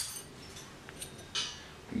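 Snap ring pliers working a snap ring off a centrifugal clutch: a faint metallic tick just under a second in, then a short metallic scrape and clink about a second and a half in.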